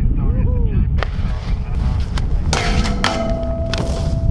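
Wind rumbling on the microphone, a dense low rumble throughout, with a short voice call near the start and a few steady tones in the second half.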